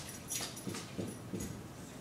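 Dry-erase marker squeaking in a few short strokes on a whiteboard as numbers are written.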